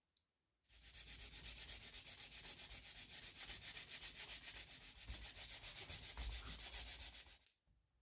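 Sanding on the planked wooden hull of a ship model, a steady rasping with a fast, even pulse of about seven strokes a second. It starts about a second in and stops near the end, as the hull is prepared for painting.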